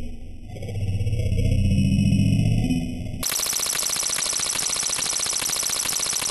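Heavily filtered, distorted edited audio from a cartoon soundtrack. About three seconds in it cuts abruptly to a harsh, rapidly pulsing buzz.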